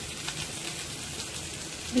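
Beef and bell-pepper kebabs sizzling on a hot ridged grill pan: a steady crackling hiss of fat and juices frying on the metal, over a low steady hum.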